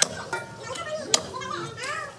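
Cleaver chopping into a goat carcass on a wooden chopping stump: two sharp chops about a second apart, over children's voices chattering in the background.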